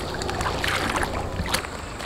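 Hand scooping mud in shallow muddy paddy water, with a few splashes and sloshes, while mud is gathered to plaster the field bund.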